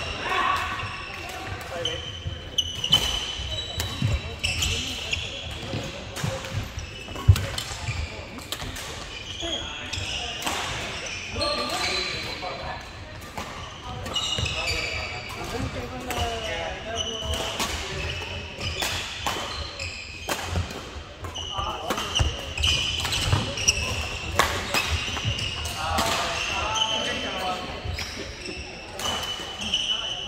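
Badminton rackets striking shuttlecocks in quick irregular clicks, mixed with sneakers squeaking on the wooden court floor and indistinct voices across the hall.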